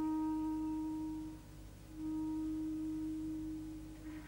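A woodwind instrument plays a long, steady sustained note solo. The note breaks off about a second and a half in and is taken up again at the same pitch half a second later.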